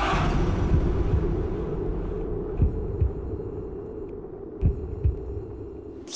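Dramatic suspense background score of a TV serial: a sustained low drone with a handful of deep thumps at uneven spacing, held under a silent, tense pause.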